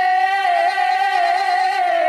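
A single voice singing a Telugu folk song unaccompanied, holding one long, slightly wavering note that dips in pitch near the end.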